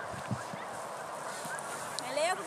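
Faint bird calls, a few short chirps rising and falling in pitch, over a steady outdoor background hiss.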